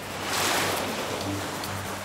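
Cartoon water sound effect of a boat's bow cutting through waves: a splashing whoosh that swells about half a second in and then eases off, over background music with steady low notes.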